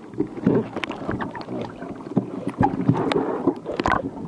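Water sloshing and churning around an underwater camera, heard muffled, with irregular bubbling gurgles and short knocks.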